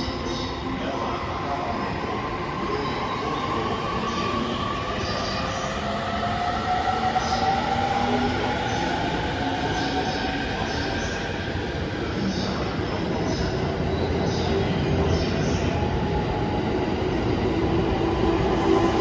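E231-series electric commuter train with renewed traction equipment accelerating away from the platform: the traction inverter and motors whine in several tones that rise steadily in pitch, over the running noise of wheels on rail.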